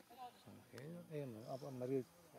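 A man's voice talking, words not made out, starting about half a second in and running on to the end.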